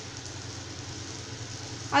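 Small onions, tomatoes and spices frying in oil in an aluminium kadai: a steady, even sizzle.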